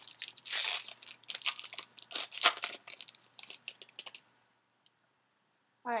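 Thick plastic wrapping on a trading-card pack crinkling and tearing as it is pulled open, in a run of crackly rustles that stop about four seconds in.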